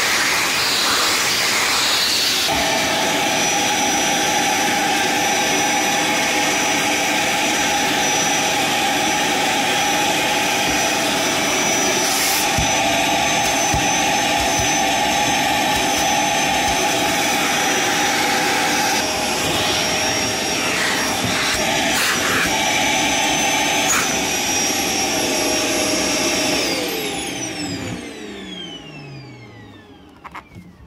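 Scheppach HD2P 1250 W wet-and-dry vacuum cleaner running steadily with a crevice nozzle on its hose, its note shifting a couple of seconds in, with a few light knocks. A few seconds before the end it is switched off and the motor winds down with a falling whine.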